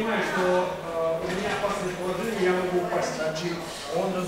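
Speech: a man talking steadily.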